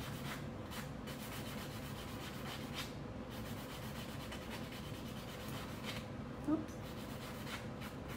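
A nail buffer block rubbing in short strokes over dip-powder nails, a faint scratchy rubbing as the dipped coat is smoothed down.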